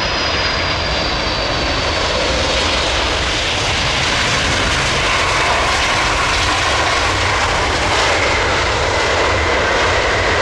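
Boeing 747-400 jet engines passing close by on the landing roll: a loud, steady jet roar that grows slowly louder. A high whine slides gently down in pitch early on, and a second whine comes in during the second half.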